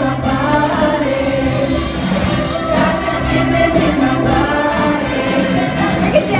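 Mixed-voice show choir singing a pop number over a live band, the group sound held steady and loud.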